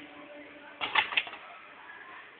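Two-sided inner-wire stripping machine cycling on an HDMI cable's wires: a faint steady hum stops, then a quick cluster of three sharp clacks about a second in.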